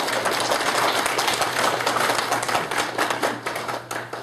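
A small gathering of people applauding, with steady clapping that tapers off near the end.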